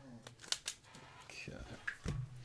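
A few sharp clicks and light rustling as trading cards and a wax pack are handled and set down, with a short trailing hum of a man's voice at the start.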